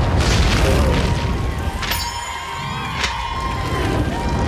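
Action-film sound mix: dramatic music over a deep booming rumble of fire, with sharp blasts just after the start and at about two and three seconds in. A high ringing tone holds from about two seconds in until near the end.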